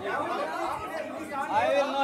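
Speech only: indistinct voices talking over one another.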